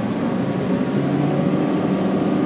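Cabin sound of a 2009 Orion VII NG diesel-electric hybrid city bus under way: a steady drivetrain drone and road noise, with a faint whine from the electric drive rising in pitch.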